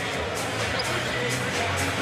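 Basketball arena sound during live play: a steady crowd din with music under it, and the ball being dribbled on the hardwood court.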